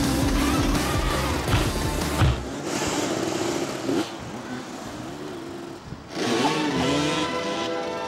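Motoball dirt-bike engines revving up and down over background music, the engine sound shifting abruptly a few times.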